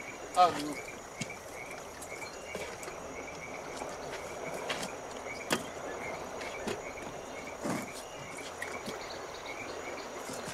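Summer insect chorus in dry grass: a steady high buzz with a faint short chirp repeating about three times a second, and a few soft clicks.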